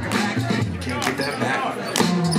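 Hip hop break-beat music played over a loudspeaker, with heavy drum hits about once a second and a vocal line over it.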